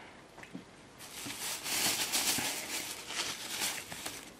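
Rustling and handling noise, starting about a second in and lasting nearly three seconds.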